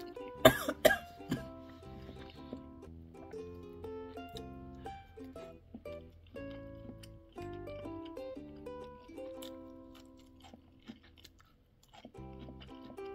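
Light background music with a steady beat. About half a second in, two sharp, loud coughs a moment apart, followed by a smaller third, as she eats spicy noodles.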